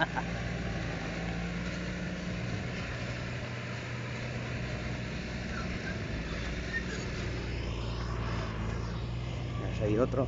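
A vehicle engine idling steadily, a low hum under outdoor background noise.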